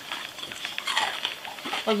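Crunching into and chewing a crispy deep-fried fish fritter close to the microphone: a quick, irregular run of crisp crunches.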